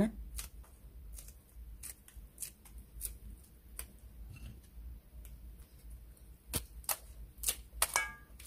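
Dried squid being torn apart by hand into thin shreds: scattered small dry crackling clicks, with a few sharper snaps in the second half.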